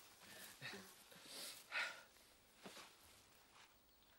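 Near silence, with a few faint, brief noises, the clearest a little under two seconds in.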